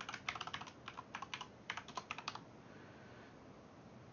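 Computer keyboard typing: a quick run of keystrokes that stops about two and a half seconds in.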